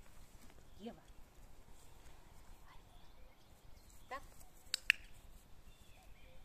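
Two sharp clicks in quick succession near the end, the loudest sounds here, amid a woman's few short words spoken to a small puppy during treat training.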